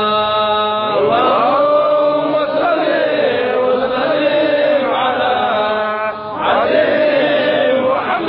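A man's voice chanting Arabic devotional verse in blessing of the Prophet, holding long drawn-out notes that bend up and down, with fresh phrases starting about a second in and again near the end.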